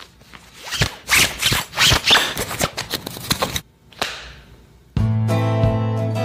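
Woven web belt being pulled through the belt loops of jeans: a quick run of rustling, scraping and clicks, then a swish about four seconds in. Acoustic guitar music starts near the end.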